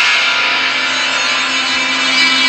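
Loud distorted music holding one dense, steady chord that starts suddenly just before and does not change.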